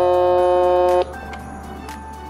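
MQ-6106 61-key toy electronic keyboard playing back a recorded chord of several steady tones held together, which cuts off sharply about a second in, leaving one faint tone.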